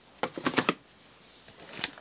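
Cardboard craft-punch boxes being handled: a quick run of clicks and rustles in the first second, then a single sharper click near the end.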